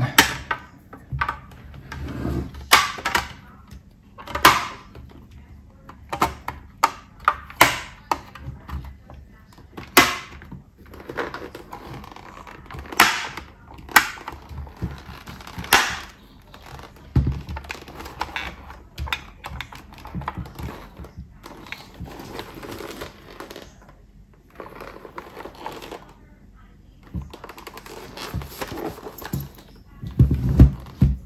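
Hard plastic clicks, knocks and scraping as the rear spoiler and trim pieces of an X-Lite X-803 helmet are pressed and snapped into place and the helmet is handled, in many separate sharp strikes.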